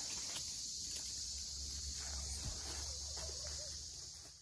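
Steady high-pitched drone of insects, with a low rumble underneath.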